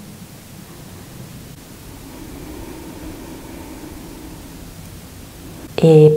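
A steady, even hiss with a faint low tone underneath, unchanging through the pause in the narration.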